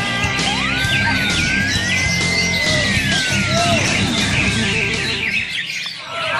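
Many caged cucak hijau (greater green leafbirds) singing at once in a contest: quick chirps and sliding whistles, with one long whistle that rises and then slowly falls over about three seconds. Music with a low bass plays underneath, and it drops away near the end.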